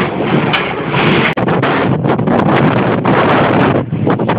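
Windmill-driven frame saw working through a log, its mill machinery running steadily, with heavy wind buffeting the microphone.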